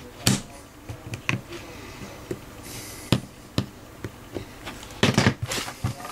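Scattered clicks and knocks of plastic Scalextric track pieces being handled and pressed down with a tool, with a louder cluster of knocks about five seconds in.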